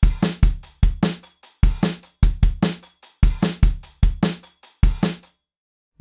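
A sampled acoustic drum loop at 150 bpm playing kick, snare and cymbal hits in a steady groove. It stops a little after five seconds in.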